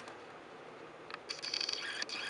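A camera's autofocus motor whirring as the lens hunts for focus on a close-up subject, coming in about two-thirds of the way through as a faint high whine with rapid fine ticking, over low room hiss.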